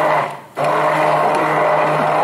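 Hand-held immersion blender motor running with a steady hum while blending oils and fragrance into a thick shampoo base in a glass beaker. It cuts out briefly about half a second in, then starts again.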